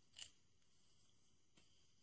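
Near silence with faint handling of a small plastic lip gloss tube: a brief scrape just after the start and a soft click about one and a half seconds in.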